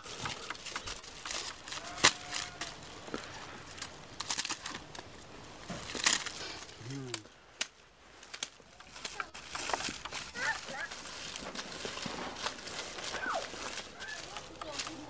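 Dry split reed strips crackling and rustling as a reed mat is worked by hand, with irregular sharp snaps and clicks.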